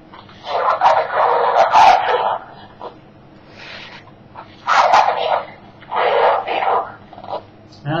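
1964 Mattel Herman Munster pull-string talking doll speaking a recorded phrase from its voice box, a thin, tinny voice in three stretches: a long one starting about half a second in, then two shorter ones around five and six seconds in.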